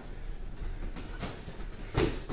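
Two boxers sparring in a ring: a steady low rumble from their footwork on the ring floor, with a couple of sharp knocks from gloves or feet, one about a second in and one at the end.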